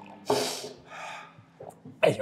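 One sharp, noisy breath from a man about a quarter second in, fading over about half a second. It is a reaction to the burn of a very hot chilli nut.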